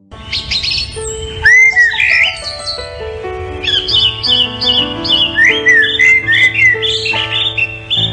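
Rapid high chirping calls over soft background music with long held low notes. The chirps come in quick runs of short, hooked squeaks.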